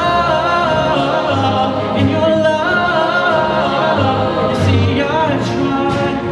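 Mixed-voice show choir singing, backed by a live band with bass and cymbals, amplified through the stage sound system.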